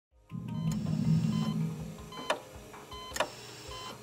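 Intro theme music for a short medical program. A low sustained tone swells for the first two seconds under steady higher tones, then two sharp hits land a little under a second apart.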